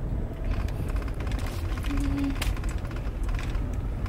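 Car running, heard from inside the cabin as a steady low rumble, with a few faint clicks and a brief low tone about two seconds in.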